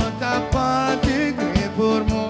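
Live band playing, with a man singing lead into a microphone over guitar and drums; the drums keep a steady beat of about two hits a second.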